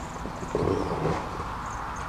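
A drum pump being pulled up out of a tall cardboard box: a brief scraping rustle of about half a second, starting about half a second in, over a steady low outdoor background.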